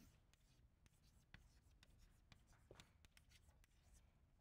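Chalk writing on a blackboard: faint, irregular taps and scratches of the chalk strokes.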